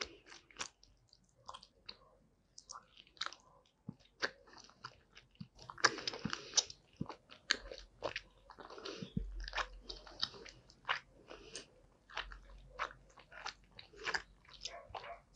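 Close-miked mouth chewing a gummy worm: irregular sticky, wet clicks and smacks of the lips and teeth working the soft candy, getting busier about halfway through.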